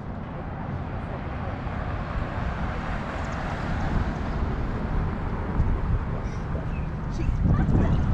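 Outdoor street ambience at a town intersection: a steady wash of traffic noise with a low rumble, swelling near the end as a car approaches.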